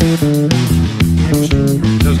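A rock band's mix playing: electric bass and electric guitar holding a groove over drums, in a song built on a single chord in E.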